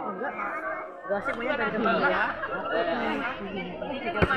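Group of young students talking over one another: overlapping chatter.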